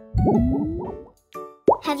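Cartoon plop sound effect, a low bouncy blob of sound with a rising whoop, lasting about a second, over light children's background music; a voice starts speaking near the end.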